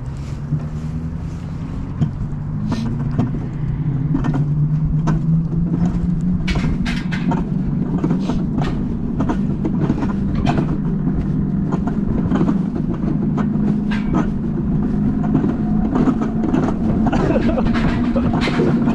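Alpine coaster sled rolling down its steel tube track: a steady wheel hum that rises a little in pitch and grows louder over the first few seconds as the sled picks up speed, with frequent sharp clicks and rattles from the track.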